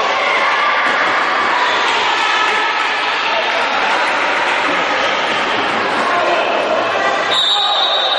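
Echoing voices of players and spectators in a sports hall during a futsal match, with the ball thudding on the court floor. Near the end a referee's whistle starts with a steady high note.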